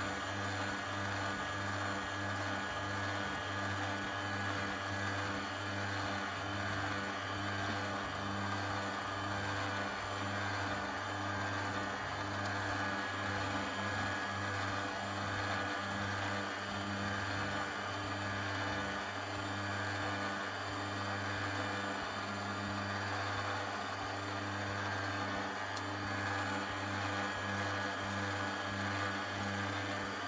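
Proxxon DH 40 miniature thickness planer running steadily as a small board feeds through it: an even motor hum with a regular pulsing.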